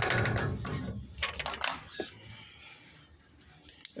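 Several light clicks and knocks, like small metal parts being handled, in the first two seconds. The rest is near quiet.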